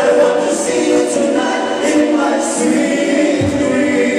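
Male vocal trio singing a soft-rock ballad in harmony through handheld microphones, voices holding long notes. The bass of the backing music drops out for most of the stretch, leaving the voices nearly unaccompanied, and comes back near the end.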